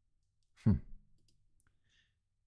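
A man's short, closed-mouth "hmm" with falling pitch, followed near the end by a few faint clicks.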